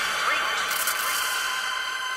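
Hardstyle breakdown without the kick drum: the fading, echoing tail of a pitched vocal sample over a held synth chord. Hiss swells in about a third of the way through and drops away near the end.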